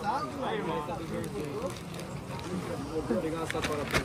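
Indistinct background chatter of several voices, quieter than close talk, with a few light clicks near the end.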